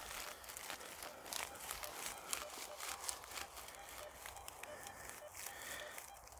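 Faint crackling of dry crop stubble as a metal detector's coil is swept through it: many small, irregular clicks and rustles.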